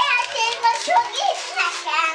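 A young child's high-pitched voice, excited vocalizing and chatter without clear words.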